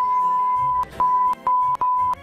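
A steady 1 kHz censor bleep masking a phone number being read aloud: one long tone ending a little under a second in, then three shorter bleeps with brief gaps between them.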